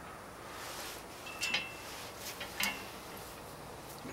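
Metal climbing hardware clinking about three times, light clicks with a brief metallic ring, as a sling is equalized between two anchor points.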